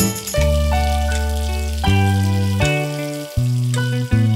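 Instrumental passage of a children's song between sung lines: held notes over a bass line, the chord changing about every second.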